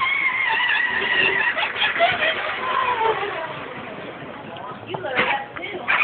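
Indistinct voices of several people talking and calling out, growing quieter through the middle and picking up again with a few louder calls near the end.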